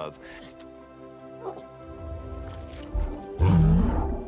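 Film score holding sustained notes, then about three and a half seconds in a loud, short, deep growl from a giant ape creature, a film sound effect, over a low rumble.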